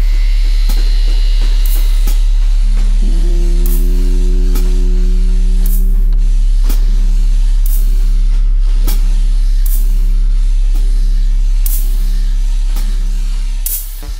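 Live experimental percussion music: a loud, steady deep bass drone under scattered sharp clicks and strikes on a snare drum, with a sustained lower tone joining about three seconds in. It all cuts off abruptly near the end.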